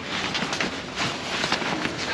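Irregular rustling and rubbing of tent fabric being handled and pulled into place at the side of the boat.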